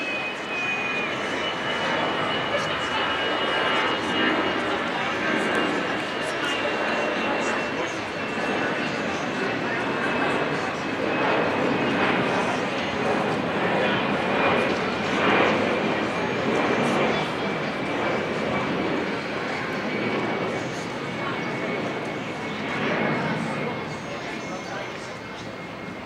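Spectators' chatter mixed with a steady roar, under a faint high whine that slowly sinks in pitch across the whole stretch.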